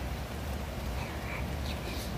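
Steady rain falling, an even hiss, with a low hum beneath it.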